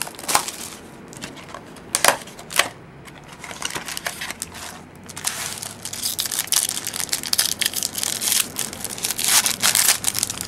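The wrapper of a trading-card pack being crinkled and torn open by hand. There are a few sharp crackles in the first three seconds, then continuous crinkling through the second half.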